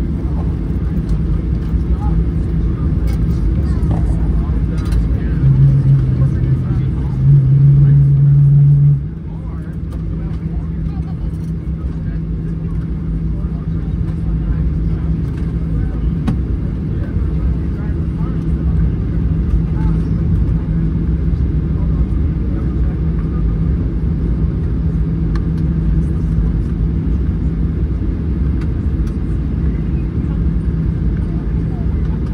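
Boeing 737-800 cabin noise while taxiing: a steady low rumble from the jet engines at taxi power. A louder low hum comes in twice between about five and nine seconds in, after which the overall level drops a little.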